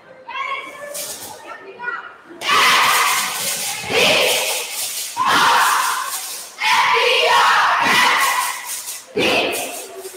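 A cheerleading squad shouting a cheer in unison, in loud chanted phrases about a second each, echoing in a school gymnasium. The group shouting comes in about two and a half seconds in, after a few quieter spoken words.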